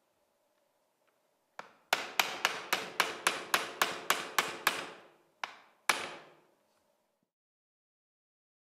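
Hammer tapping a new retaining pin through a golf trolley clutch into its axle, metal on metal. One light tap, then a quick run of eleven taps about four a second, then two more after a short pause, each ringing briefly.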